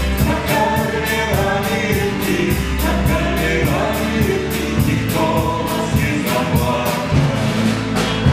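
Small band playing live: voices singing over electric guitars and a drum kit, with cymbal strokes about four a second keeping a steady beat.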